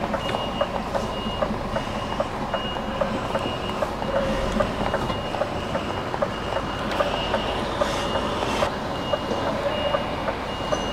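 A lorry's reversing alarm beeping steadily, about one high beep a second, as the articulated truck backs its flatbed trailer. The truck's engine rumbles low underneath.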